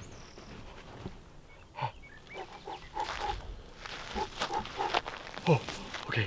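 A person's short, soft vocal sounds, murmurs and breaths, coming every fraction of a second from about two seconds in, over faint scuffing of dry soil around a hand held in an ant mound.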